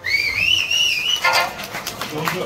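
A shrill finger whistle (Okinawan yubibue) from the audience at the end of a song: one high note that rises and wavers for just over a second, then a few claps.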